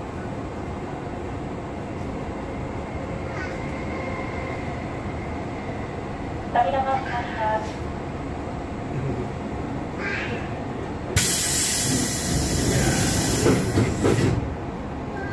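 Interior running sound of a Hankyu 7000-series electric train car: a steady low rumble. About eleven seconds in, a loud hiss starts suddenly and lasts about three seconds.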